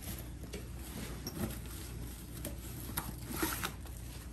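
Rustling and light scrapes of paper and plastic school supplies being pulled out of a fabric backpack by hand, with a few short knocks.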